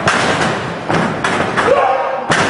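Several thuds of wrestlers' bodies or feet hitting the ring canvas. A loud shout rises near the end.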